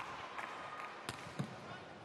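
Quiet indoor volleyball arena ambience, with a couple of faint sharp knocks about a second in.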